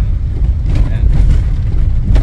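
Steady low rumble of a vehicle's engine and road noise heard from inside the passenger cabin while driving.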